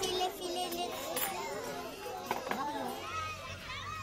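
Young children's high-pitched chatter, several small voices talking over one another.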